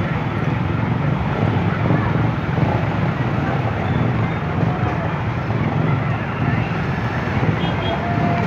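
Engines of motorcycles and other vehicles in dense, slow-moving traffic, running steadily, with crowd voices mixed in.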